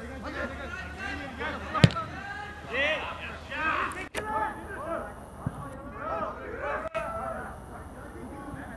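Several voices shouting and calling at once across a football pitch, with a single sharp thump about two seconds in, the loudest sound.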